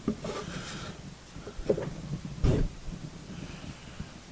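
Workshop handling noise: a metal diamond-plate panel being set on edge and moved about on a wooden workbench, with small knocks and a dull thump about two and a half seconds in.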